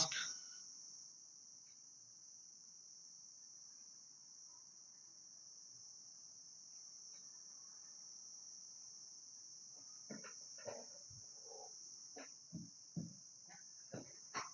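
Faint background with a steady high-pitched trill, and a few soft knocks and taps in the last few seconds.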